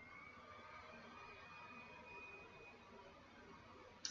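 Near silence: faint room hiss with a faint, thin, steady high tone that stops about two-thirds of the way through.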